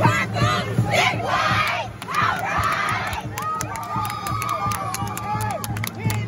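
A group of girls shouting and screaming in celebration. Dense overlapping yells fill the first three seconds, then a long drawn-out cry is held over the rest.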